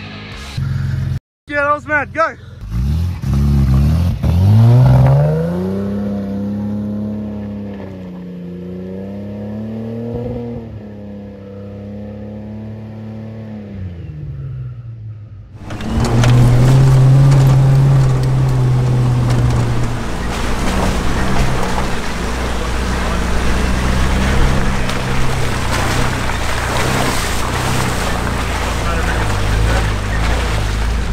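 A vehicle engine whose note rises and falls for the first half, then, after a sudden change about halfway in, the steady in-cabin drone of the Nissan GQ Patrol's engine with rattling and tyre noise as it drives over a rough, muddy dirt track.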